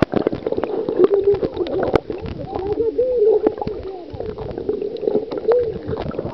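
Shallow seawater heard with the microphone underwater: gurgling and many small clicks and crackles of moving water and bubbles, with voices from above the surface coming through muffled.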